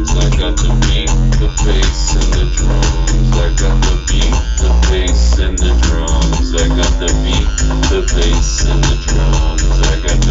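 Electronic drum-and-bass track with a busy drum beat over a continuous deep bass drone and an arpeggiated synth line.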